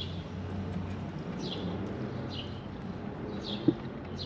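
Steady low hum and hiss inside a parked car's cabin, with a bird outside giving short falling chirps about once a second. Near the end there is one brief short sound.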